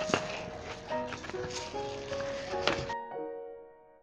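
Background piano music playing throughout, with knocks and rustling from handling a plastic plant pot and a wooden stake over the first three seconds. The handling noise stops abruptly, leaving only the music.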